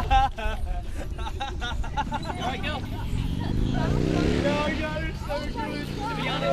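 People's voices and chatter, then a motor vehicle's engine whose pitch rises from about halfway through and then holds steady.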